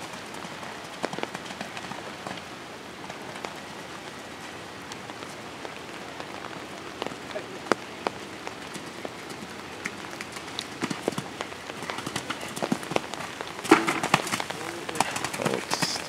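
Steady rain falling on an umbrella, with scattered sharp ticks of single drops hitting it. Voices and a few louder knocks come in near the end.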